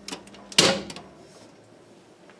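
A sharp snap about half a second in as the house's main breaker is switched off and the power is cut. A faint steady electrical hum stops with it.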